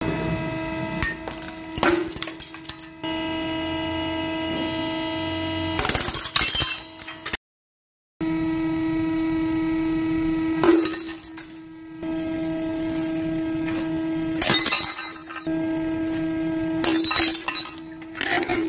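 Hydraulic press running with a steady motor hum while its platen crushes a decorative bottle ornament, with crunching bursts about two and six seconds in. After a brief silence the hum returns, and glassware cracks and shatters under the press in bursts about eleven, fifteen and seventeen seconds in.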